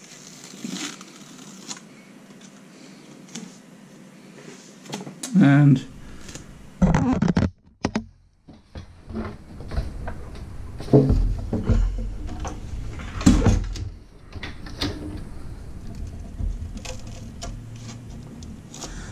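Knocks and rubbing from hands working insulation into a sheet-metal toaster-oven shell, with bursts of muttered voice.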